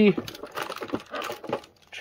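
Foil trading-card booster packs rustling and tapping against a metal tin as a stack of them is lifted out: a run of quick, light clicks and crinkles.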